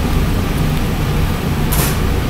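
A man drinking from a can over a steady low room hum, with one short breathy hiss about three-quarters of the way through as he finishes the swig.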